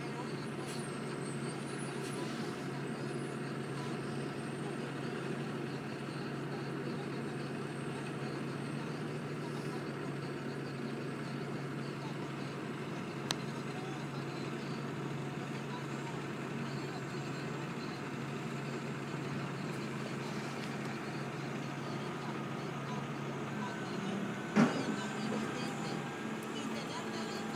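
Diesel engine of a cotton module truck running steadily. There is a sharp click about halfway through and a louder bang near the end.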